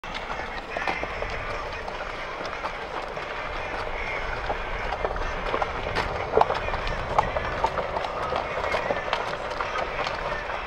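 Golf cart rolling over grass: a steady low rumble with frequent small knocks and rattles as it moves.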